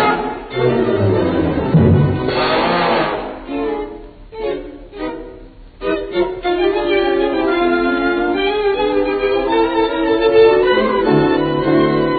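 Orchestral music led by bowed strings, with a wavering passage about two seconds in and a quieter, broken stretch of short notes around four to six seconds in before the sustained strings return.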